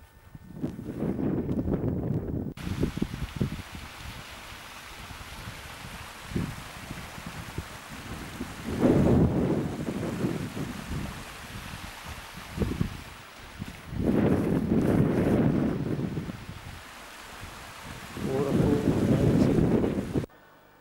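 Wind buffeting a camcorder's built-in microphone in four strong gusts, a low rumbling roar over a steady hiss.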